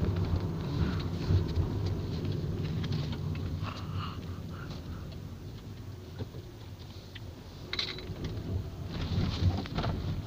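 Car road noise heard from inside the cabin: a steady low rumble of tyres and engine, easing off in the middle and rising again near the end.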